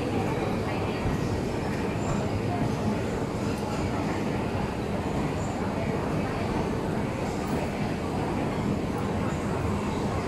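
Steady rumble of a moving shopping-mall escalator, with a background of crowd chatter.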